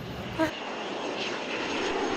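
Steady rushing cabin noise of a jet airliner, engine and airflow heard from inside the passenger cabin, cutting in about half a second in.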